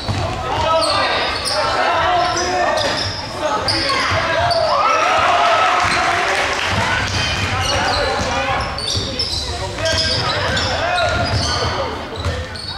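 Basketball game sound in a large gym: a ball bouncing on the court amid spectators' voices, shouting and talking throughout.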